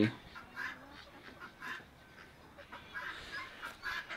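Faint, scattered calls of backyard domestic fowl (chickens and a goose) in an otherwise quiet yard.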